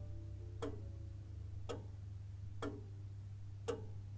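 Clock ticking, four ticks about a second apart, over a low steady hum.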